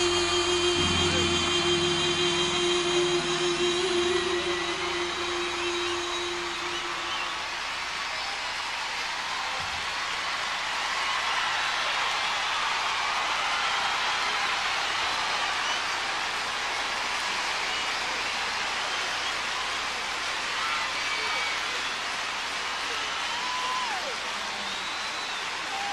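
The band's final held note fades out about seven seconds in, leaving a large concert crowd cheering and screaming, with high screams rising and falling throughout.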